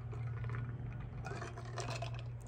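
A man drinking from an insulated tumbler: quiet sips and swallows over a steady low hum.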